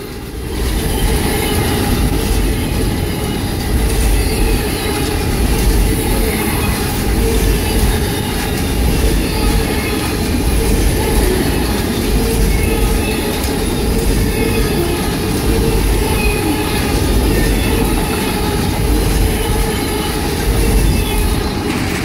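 Amtrak Auto Train's enclosed autorack cars rolling past close by: a loud, steady rumble of steel wheels on rail, with a thin steady whine riding above it.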